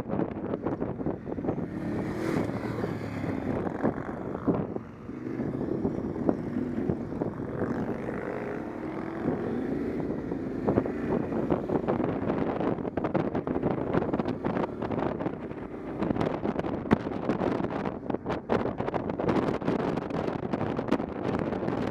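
Motorcycle engine running under way, its note rising and falling with the throttle, with wind buffeting and crackling on the microphone, heavier in the second half.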